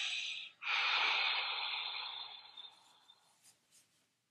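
A man breathing out hard and slowly under the effort of a seated leg-lift hold: a hissing exhale that ends about half a second in, then a longer one that fades away over the next two and a half seconds.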